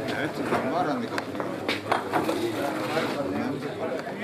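Men's voices talking over one another in a gathering, with a few short clicks or knocks in the middle.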